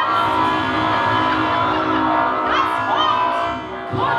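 A woman's amplified voice singing wordless sustained tones with upward pitch glides near the start and twice more later, layered over a dense, steady bed of live-electronic sound.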